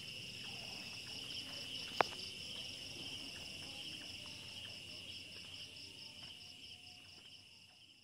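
Crickets chirping in a faint, steady, high-pitched pulsing trill that fades out near the end, with one sharp click about two seconds in.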